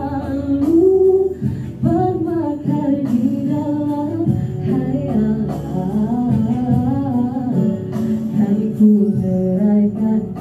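A woman singing into a handheld microphone, holding notes that bend up and down in pitch.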